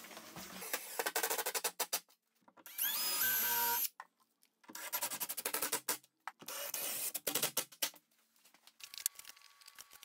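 Cordless impact driver driving screws into wooden French cleats, in four bursts of rapid hammering with short pauses between, the motor pitch rising in the second burst.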